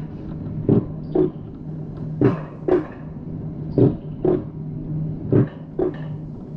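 Alpine mountain coaster sled running down its tubular steel track, its wheels giving a steady low hum and clacking over the rail joints in pairs, about half a second apart, roughly every second and a half.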